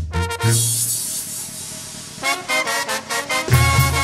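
Mexican banda brass-band music, a chilena from a medley: a cymbal crash rings out about half a second in, then brass chords play. The low brass and beat come back strongly near the end.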